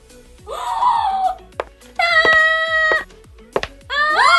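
A high-pitched voice making two drawn-out exclamation sounds, wordless: the first slides up then down about half a second in, the second is held on one level pitch for about a second.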